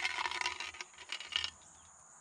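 A spent .22 bullet rattling and clinking inside a shot-through metal spray can as the can is shaken, a quick run of small metallic clicks that stops about a second and a half in. Crickets keep up a faint steady high chirr behind it.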